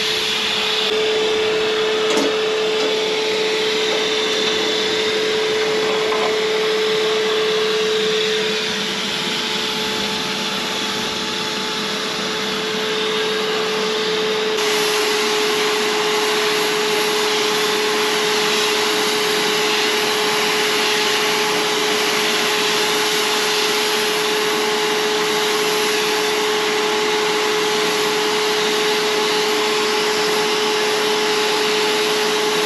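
Air-fed paint spray gun hissing steadily over the even hum of its air supply while spraying paint. The hiss turns brighter about halfway through.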